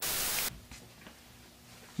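A half-second burst of hissing static, a glitch transition sound effect, cutting off abruptly and followed by faint room tone with a few small ticks.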